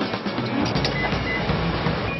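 Background music over a steady mechanical whir from a room full of electric fans, with a few clicks and two short high beeps about a second in.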